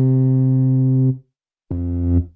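Synthesizer chord in a techno/trance track, held without a beat. It cuts off a little after a second in, and after a short silence a new synth chord starts near the end.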